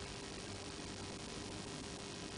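Quiet room tone: a steady background hiss with a faint constant hum, and no distinct sound events.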